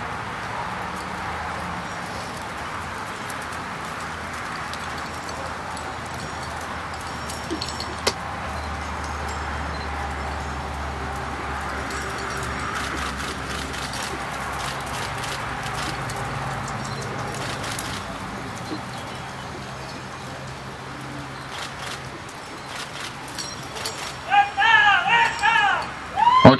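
Steady outdoor background noise with a few faint clicks. A man's voice begins talking near the end.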